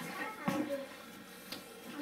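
Faint voices in a small room, with a single light click about three-quarters of the way through.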